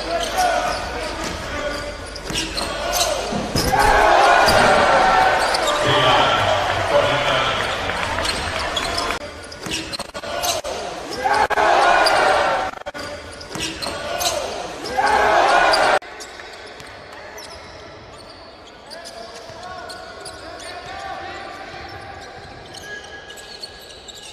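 Live basketball game sound in a large, echoing arena hall: a ball bouncing on the hardwood court and sharp knocks of play, under loud voices. About two-thirds of the way through it cuts abruptly to quieter game sound from another match.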